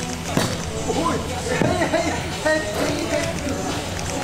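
People's voices over background music, with a couple of short knocks.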